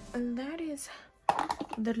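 A woman's voice briefly, then a short run of quick clicks and taps starting a little over a second in.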